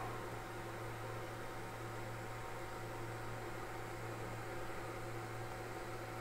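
A steady low hum with a faint even hiss underneath, with no distinct events.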